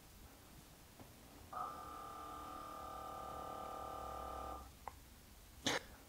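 The ThirdReality smart watering kit's small water pump, switched on from Home Assistant, runs with a faint steady hum for about three seconds, its set water duration, then cuts off. A small click follows just after it stops.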